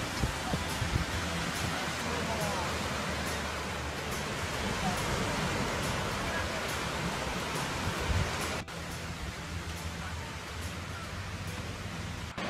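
Steady wash of breaking surf with wind rumbling on the microphone and faint voices of people on the beach. The sound drops suddenly to a quieter, thinner wash about three-quarters of the way through.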